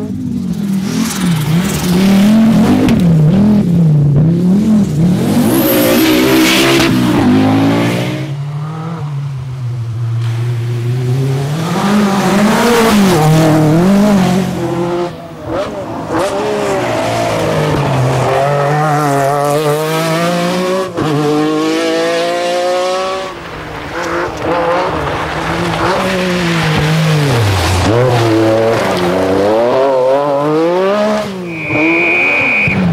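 Group B rally cars at full throttle on stage, among them an Audi Quattro and an MG Metro 6R4, passing one after another. Engine pitch climbs and falls repeatedly as they run through the gears and lift for corners.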